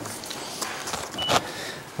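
Quiet room tone of a meeting chamber heard through the dais microphone, with one brief faint click a little past the middle.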